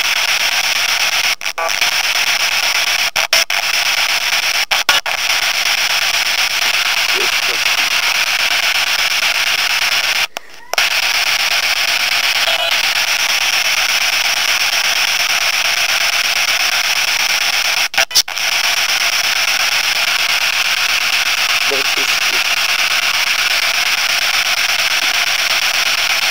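Steady radio static hiss that cuts out briefly several times, once for about half a second. A cat meows faintly about halfway through.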